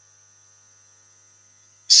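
Steady low electrical mains hum, with a faint high-pitched whine joining about two-thirds of a second in.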